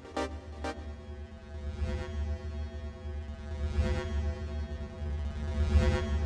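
Electronic music: a last few short synth stabs stop about half a second in, leaving a deep held bass drone under sustained synth tones, with a hissing swell rising about every two seconds.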